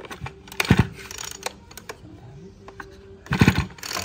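Two pulls on the recoil starter of an Echo two-stroke brush cutter engine, each a short rasping whir of the cord, the first about a second in and the second near the end. The engine does not fire.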